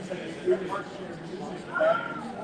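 Indistinct chatter of several people talking at once in a room. A short, louder, high-pitched vocal sound rises and falls near the end.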